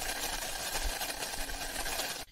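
Liquid boiling vigorously in a steel cooking pot, a steady bubbling that cuts off suddenly just before the end.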